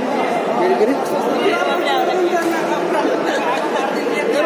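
Many people talking at once in a large indoor sports hall: a steady, unbroken babble of overlapping voices.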